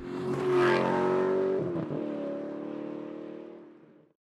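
Closing logo sound effect: a sustained pitched sound that swells up, shifts pitch about a second and a half in, and fades out.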